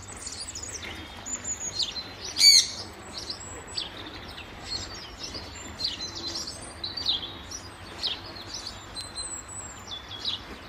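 Small songbirds chirping and singing, many short high chirps and whistles overlapping. The loudest is a quick run of rapid notes about two and a half seconds in.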